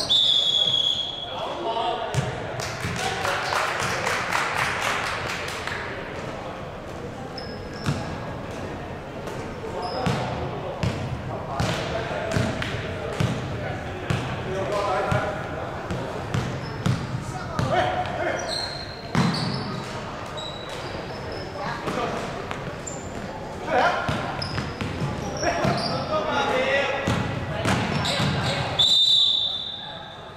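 Basketball game on a wooden gym floor: the ball bouncing repeatedly, sneakers squeaking in short high chirps now and then, and players' voices, all echoing in a large hall.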